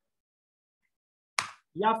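Near silence, then a single short sharp click about one and a half seconds in, just before speech resumes.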